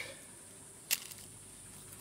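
A single short, sharp click about a second in, over a faint steady high-pitched hiss.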